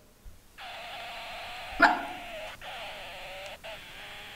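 Electronic voice of a toy baby doll malfunctioning: a steady, garbled buzzing tone that starts about half a second in, with a sharp click near the middle and a couple of brief breaks. The doll sounds broken, which its owners put down to flat batteries.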